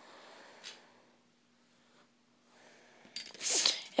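Near silence, then about three seconds in a short, sharp, hissy intake of breath through the nose just before speaking resumes.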